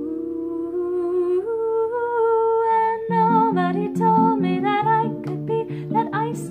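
A woman humming a wordless melody over her own acoustic guitar. The guitar notes come in more strongly about halfway through.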